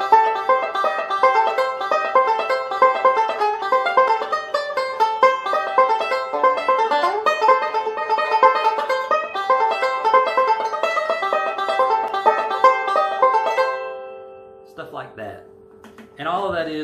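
Five-string resonator banjo picked with fingerpicks in fast bluegrass rolls up the neck, a high break. The playing stops about 14 seconds in and the last notes ring out.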